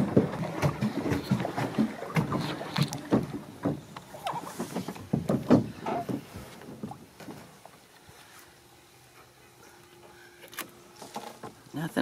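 Repeated knocks and clatter of a jug line and its plastic float being handled against the side of a small boat, thickest over the first six or seven seconds, then dying down with a few more knocks near the end.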